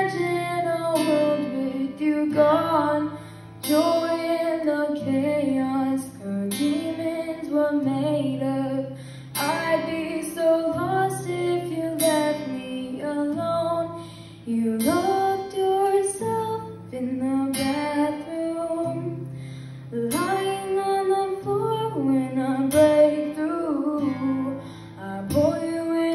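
Young female voice singing to her own strummed acoustic guitar, a live solo acoustic cover of a pop ballad.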